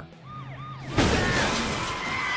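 Cartoon sound effect of a body landing on a car hood: a sudden loud crash about a second in, followed by smashing and rattling that rings on, with music underneath.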